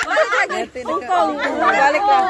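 Several women's voices talking over one another in excited chatter, with laughter.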